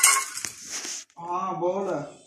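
A bowl clattering and rattling on a hard floor as kittens knock it about. It is loudest in the first second. A person's voice follows briefly near the end.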